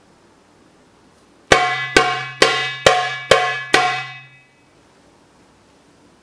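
Darbuka struck six times at an even pace, about two strokes a second. Each stroke is sharp and rings out before dying away.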